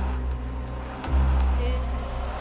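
Dark ambient background music: a deep bass drone that swells and fades in pulses about every one and a half seconds.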